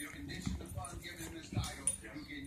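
A dog whimpering, with television voices talking in the background.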